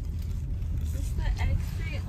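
Steady low rumble of a car heard from inside the cabin, with faint talk in the background from about a second in.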